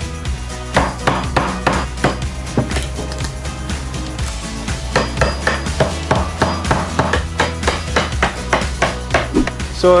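Claw hammer striking a chisel into a wooden table leg, cutting out a notch: a run of sharp knocks, about two to three a second, over background music.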